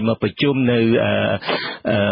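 Speech only: a man's voice reading the news in Khmer, with one drawn-out vowel in the first half.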